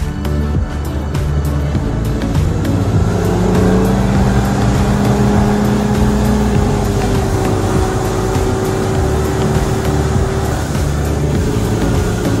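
Yamaha outboard engine running with the boat under way at speed, with wind and water noise and a steady engine note, under background music.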